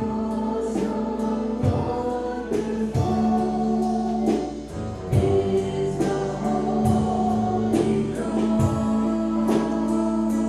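Live worship song: several voices singing together over instrumental accompaniment, with held notes over a sustained bass line.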